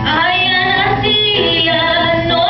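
A woman singing into a microphone with held, sliding notes, accompanied by a nylon-string classical guitar.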